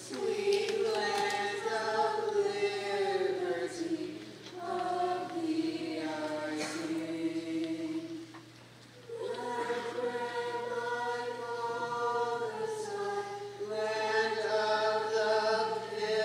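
Mixed high school choir singing slow, long-held phrases, with a brief break for breath about eight seconds in.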